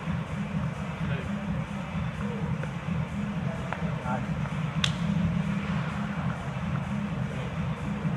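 A steady low hum of gym background with faint voices, and one sharp tap about five seconds in: a tennis ball struck off a shoe during a balance-ball volley drill.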